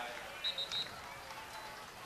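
Faint open-air field ambience picked up by the broadcast microphone at a football game, with three quick high-pitched beeps close together about half a second in.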